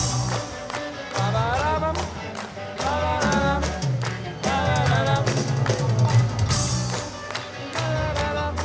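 Rock music: a repeating bass line and regular drum hits under a high melody line that slides between notes.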